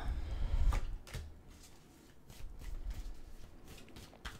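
A tarot deck being handled, with soft rustles and light taps as cards are shuffled and one is laid on a wooden tabletop. A low handling rumble in the first second.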